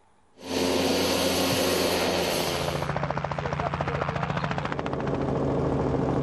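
Helicopter in flight, starting abruptly about half a second in, with the fast, even beat of its rotor blades over a steady low engine drone.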